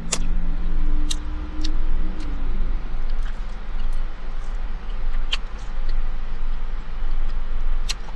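Steady low rumble of a car idling, heard inside the cabin, with a few short clicks and smacks of chewing and handling food. A low steady tone fades out about two and a half seconds in.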